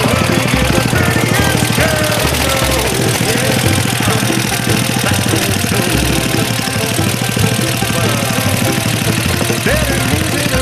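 Small single-cylinder Briggs & Stratton lawn-mower engine running with a rapid firing beat, driving an off-road go-kart as it crawls over rocks and brush.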